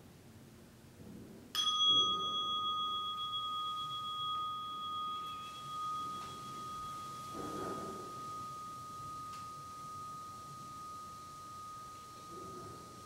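A meditation bell struck once about a second and a half in, ringing on with a clear, slowly fading tone that marks the end of the sitting. A short soft rustle of cloth comes midway.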